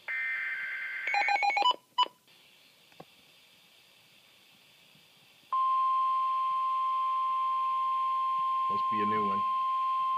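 A Midland NOAA weather radio playing an incoming alert. It opens with about a second of warbling two-pitch digital data tones, the SAME alert header that starts a new warning, followed by a quick run of short stepping beeps and a click. After a couple of seconds of near silence, the steady single-pitch 1050 Hz NWS warning alarm tone starts about five and a half seconds in and keeps sounding, with a brief voice over it near the end.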